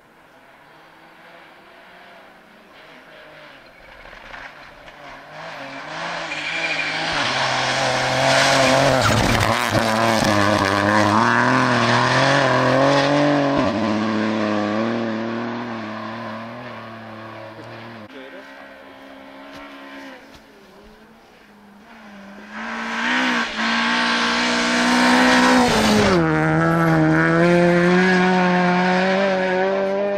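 Rally car engine revving hard through its gears on a snow stage, getting louder from about five seconds in and easing off partway through. It comes back loud from about twenty-two seconds, with a sudden drop in pitch a few seconds later, as on a downshift or lift.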